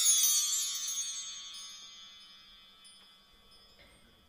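A shimmer of high chimes, many bell-like tones ringing together and fading out over about three seconds, leaving near silence.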